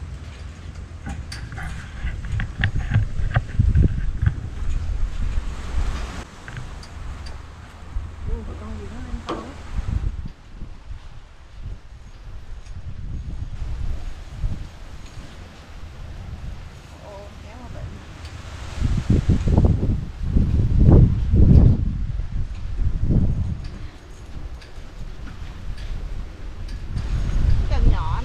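Wind buffeting the microphone in gusts as a rumble, loudest about two-thirds of the way through, with occasional voices.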